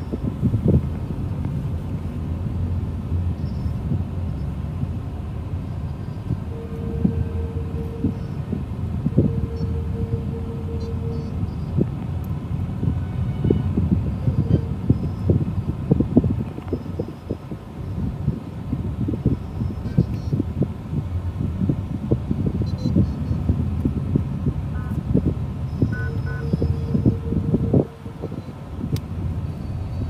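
Heavy city traffic: a constant rumble of engines and tyres in stop-and-go congestion. A vehicle horn sounds several times as a long, steady single-tone honk, twice in a row around the middle of the first half and again near the end.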